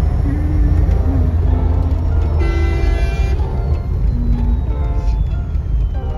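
Steady low road rumble inside a moving car's cabin, with background music over it. A vehicle horn sounds once, for about a second, about two and a half seconds in.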